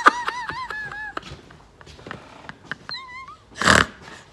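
A woman's high-pitched, breathless laughter trailing off over the first second, then a brief squeaky wavering note about three seconds in and a sharp gasping breath just before the end.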